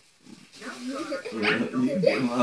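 A young child's voice laughing and squealing in play, starting about half a second in after a brief hush.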